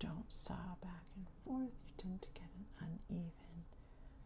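A woman's soft-spoken voice, talking quietly in short phrases.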